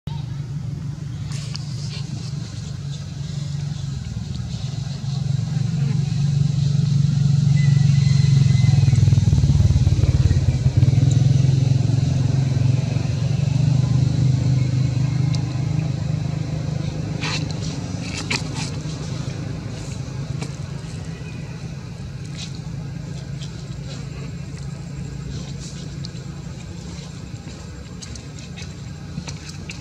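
A motor vehicle passing: a low engine rumble that builds over several seconds, peaks, then slowly fades away.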